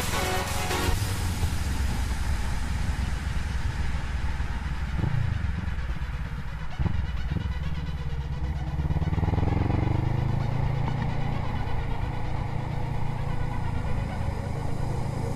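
Motorcycle engine running under way, heard from the rider's seat, with two short breaks about five and seven seconds in and a steady rise in pitch as it accelerates from about eight to ten seconds in.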